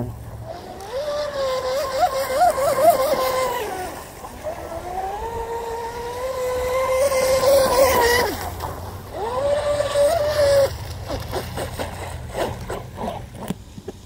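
RC speedboat's 4,000 kV brushless electric motor running at speed: a high whine that wavers and glides up and down with the throttle over three runs, the last fading out a little after ten seconds in, over the hiss of the hull and spray on the water.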